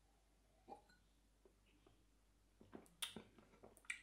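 Near silence with a few faint, short clicks of someone sipping and swallowing beer from a glass: one about a second in, then several close together near the end.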